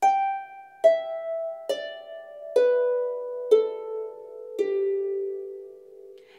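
Lever harp played slowly, one plucked string at a time: six single notes stepping downward in pitch, about one a second, each left to ring.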